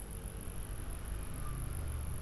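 Quiet room tone: a low steady hum and hiss with a faint constant high-pitched whine, and no distinct sound events.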